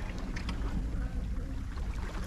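Steady low rumble of wind on the microphone, with small waves washing against shoreline rocks.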